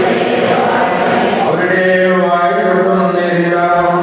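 Chanting from a Syriac Orthodox prayer service, sung in long held notes by a low male voice.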